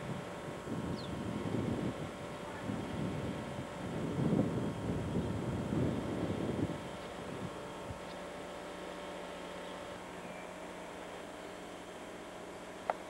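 Wind buffeting the camcorder microphone in irregular gusts for about the first seven seconds, then easing to a steady low hiss.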